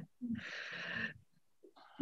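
A woman's soft, breathy laugh lasting about a second.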